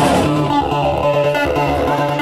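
Live band music: electric guitar over a bass line of evenly repeated low notes.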